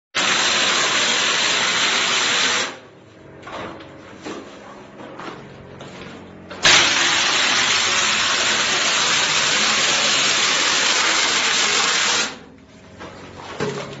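Air-powered hopper mortar spray gun spraying mortar onto a wall: a loud, steady hiss of compressed air and spray for about two and a half seconds that cuts off. It starts again suddenly about six and a half seconds in and runs for about six seconds before stopping.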